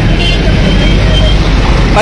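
Busy street traffic: a steady, loud low rumble of passing motorcycles, cars and auto-rickshaws.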